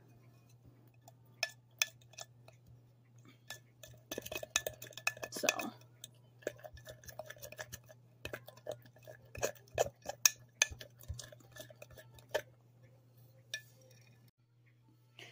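A spoon stirring thick pancake batter in a ceramic mug, with irregular clinks and taps of the spoon against the mug's wall, busiest about four to six seconds in.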